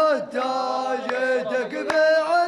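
A group of men chanting a drawn-out melodic line together in traditional Arabian style, with a sharp handclap near the end.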